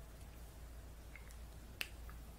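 Quiet room tone with one short, sharp click near the end.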